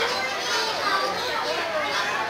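Overlapping voices chattering at once, children's voices among them, with no clear words.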